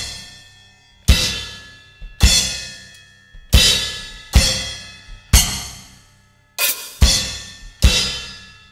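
Crash cymbal struck again and again, about once a second, with a bass drum thump under each hit; each bright crash is cut short within about a second as the striking hand catches and chokes the cymbal.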